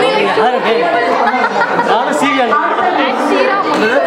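Several people talking at once in a room, their voices overlapping as chatter.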